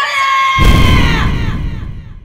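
A man shouting a title call, holding the last syllable long with a slight fall in pitch. A deep booming sound effect hits about half a second in and dies away by the end.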